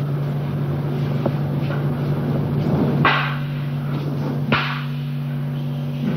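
Steady low hum of an old film soundtrack, with faint clicks and two short, louder noisy bursts about three and four and a half seconds in; the second bursts in suddenly and fades quickly.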